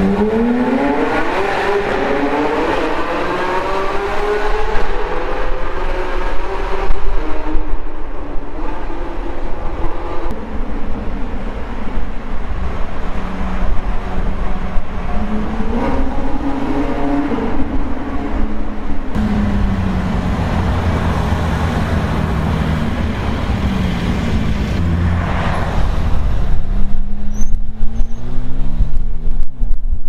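Car engine accelerating through a road tunnel, heard from inside the cabin: the revs climb steadily, fall and climb again through gear changes. Louder engine noise near the end.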